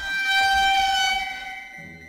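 A single sustained horn-like tone laid in as a sound effect, swelling in, sliding slightly down in pitch, then fading away.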